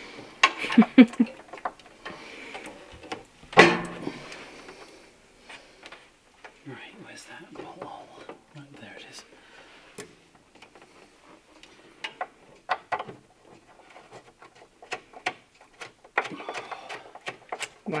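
Scattered light clicks and taps of hand work on the Volvo 240's bonnet hinge as the bolts are fitted, with one louder knock about three and a half seconds in. A short laugh comes at the start.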